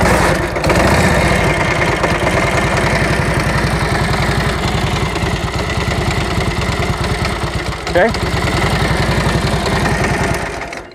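A 1943 Harley-Davidson WLA's 45-cubic-inch flathead V-twin is kick-started. It catches right at the start and settles into a steady idle with an even, rapid beat.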